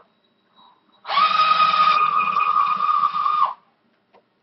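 Cordless drill running at a steady high whine for about two and a half seconds, starting about a second in, drilling a hole through a plastic part; the pitch drops as it stops.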